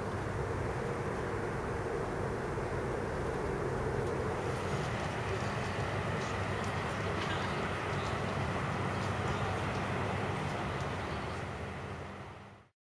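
Steady wash of distant city traffic noise heard from high above, a low rumble with faint scattered clicks, fading out near the end.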